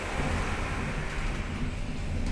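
1990 Haushahn elevator car travelling in its shaft, heard from inside the car: a steady low hum and rumble of the ride.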